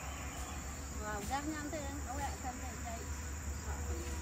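Steady high-pitched insect drone of crickets in tropical vegetation, with faint voices briefly in the middle.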